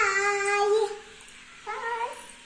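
A girl's high voice in a drawn-out sung call, held for about a second, then a shorter call near the end.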